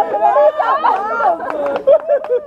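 Several people's voices talking over one another, a lively chatter of conversation.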